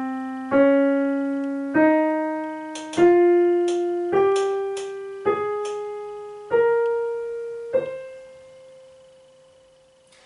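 Piano playing the C Phrygian scale upward one note at a time, about a note a second, from middle C (C, D-flat, E-flat, F, G, A-flat, B-flat) to the C an octave above, which is left to ring and fade away. The scale's flattened notes give it what the player calls a Spanish flavor.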